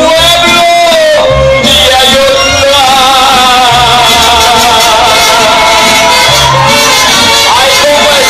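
Mariachi band playing live: violins, trumpet and guitars over a pulsing bass line, with a long held melody note through the middle.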